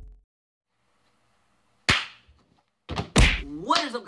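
One sharp smack about two seconds in, after a short silence, followed near the end by a few dull thumps as a man's voice begins.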